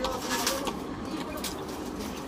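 A bird calling in low notes, twice, with a few faint clicks under it.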